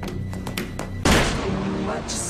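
Fight-scene impacts over music: a few sharp knocks, then a loud hit about a second in, with a voice after it.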